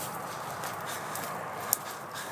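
Footsteps through dry leaf litter on a woodland trail: a steady soft rustle with a few faint crackles.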